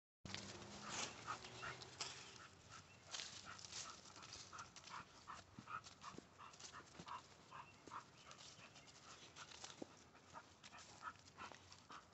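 Faint, quick panting of a pit bull-type dog straining on its leash, about three breaths a second, with light scuffs and clicks around it.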